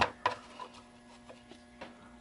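Light handling clicks of a metal Sorensen Center-Mike gauge being picked up and set onto a part, with one sharper click about a quarter second in and a few faint ticks after, over a steady low electrical hum.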